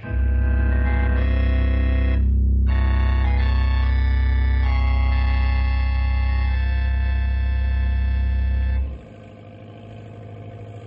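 Organ music bridge: loud held chords over a deep bass note, changing chord several times and cutting off sharply about nine seconds in. A faint low rumble follows.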